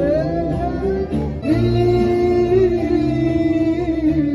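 Live band music through PA speakers: a male singer sings over electric guitar and keyboard, holding one long, slightly wavering note through the second half.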